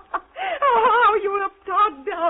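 A woman's long, high-pitched, wavering laugh in a helpless fit of giggles, with a second short peal near the end. It is heard through an old narrow-band broadcast recording.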